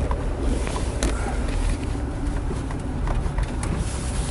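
Car driving slowly over a snow-covered road, heard from inside the cabin: a steady low engine and tyre rumble, with a few light clicks and knocks.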